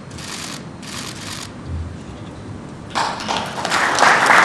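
Audience applause breaking out about three seconds in and swelling, after three short, sharp bursts of noise in the first second and a half.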